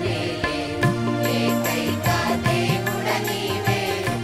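Mixed church choir of women and men singing a Telugu Christian devotional song together, over instrumental accompaniment with a sustained bass and a steady beat.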